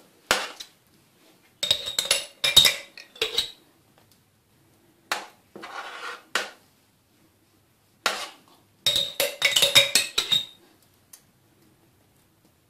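A metal spoon scraping and clinking against a sauce jar and spreading pink sauce over a bread cake. It comes in several separate bursts of scraping with ringing clinks, the longest near the end.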